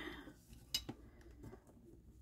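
Faint handling noise as a steel nail-stamping plate is moved on a silicone mat, with one short light clink a little under a second in.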